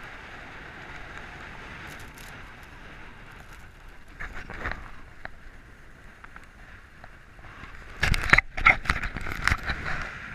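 Skis sliding over packed snow with wind rushing across the body-mounted microphone. A few seconds before the end comes a run of louder, rough scraping and buffeting bursts, as the skis bite into harder snow on a turn.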